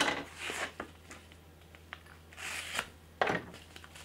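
A small knife blade slitting open a padded mailer envelope: two scraping cuts of about half a second each, with a few sharp clicks and a louder knock just over three seconds in.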